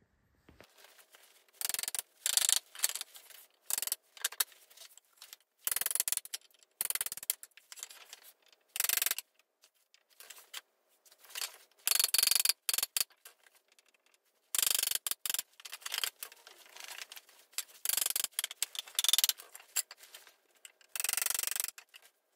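Claw hammer striking a steel pin punch against an old wooden window sash: irregular runs of sharp metallic taps with short pauses between them.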